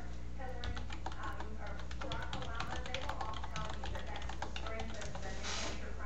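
Computer keyboard being typed on, a fast run of keystrokes starting about a second in and going on until near the end, with a voice in the background.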